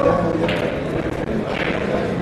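Background murmur of voices talking in a large billiard hall, with no single sharp sound standing out.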